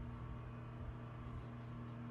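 Mini fridge running with a faint, steady hum.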